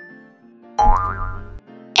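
Cartoon boing sound effect about a second in, its pitch rising over a low thud, over soft background music for children.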